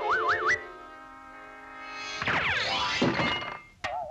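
Orchestral cartoon score following the action: a wobbling tone slides upward in the first half-second, a held chord fades away, then a loud rush of sweeping glissandos comes in about two seconds in and dies away shortly before the end.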